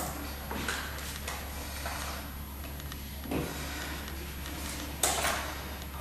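Faint scattered clicks and scrapes from a foot pedal exerciser's plastic pedal and strap as a foot is settled into it, a few light knocks spread through the moment.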